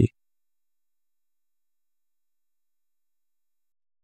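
Dead silence on the sound track, with only the end of a spoken word at the very start.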